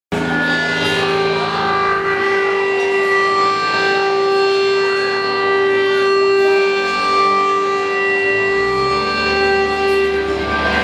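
A live rock band playing long, sustained droning electric guitar notes that hold steady for several seconds, with no drum beat.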